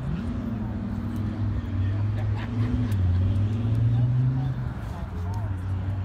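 A car engine idling steadily, with a brief rise in revs at the start and small changes in pitch partway through, over faint background voices.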